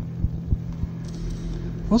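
A steady low hum with faint, irregular low thuds: the background sound-effects bed of a narrated audiobook, heard in a pause between lines. A man's narrating voice comes back in right at the end.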